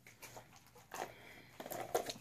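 Quiet sniffing and light handling of a plastic jar of sugar scrub held up to the nose, a few short faint strokes.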